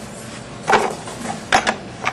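Plastic clatter and clicks of a food processor being closed up by hand: a short rattle about two-thirds of a second in, then a few sharp clicks about a second and a half in, as the lid is set and locked on before the motor runs.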